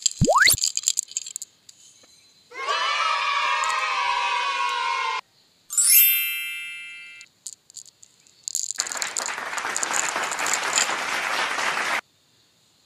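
Hard candies and jelly beans clicking as they pour into a palm, with a quick rising whistle. Then a string of added sound effects: a held chord for about two and a half seconds, a bright ding that rings out, and about three seconds of dense crackling like applause.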